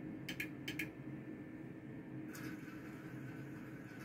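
Electronic roulette gaming machine: two quick pairs of sharp clicks, then about two seconds in a longer rattling sound that fades as the on-screen wheel is set spinning, over a steady low hum.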